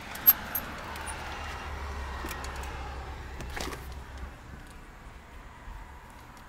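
A front entry door being opened: a sharp latch click just after the start with a brief light metallic jingle, then a few seconds of handling noise and low rumble, and another click about three and a half seconds in.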